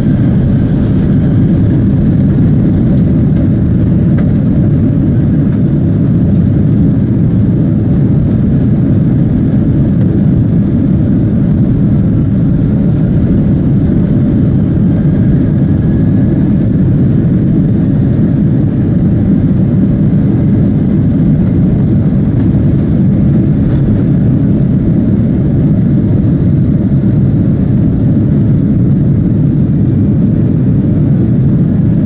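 Jet airliner's engines at takeoff power heard from inside the cabin: a loud, steady rumble through the takeoff roll and liftoff, with a faint rising whine partway through.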